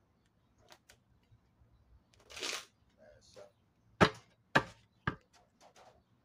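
A short hiss about two seconds in, then three sharp knocks about half a second apart, with faint ticks between them.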